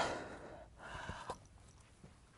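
Faint breathing as a woman pauses after speaking, with a soft rustle and two light clicks about a second in.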